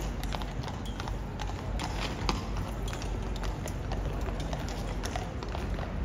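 Hooves of two shod horses clip-clopping at a walk on stone paving, a steady run of uneven hoof strikes.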